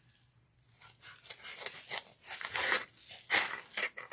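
Scissors cutting through a padded paper mailer envelope: a run of crisp snips with crinkling of the paper, starting about a second in.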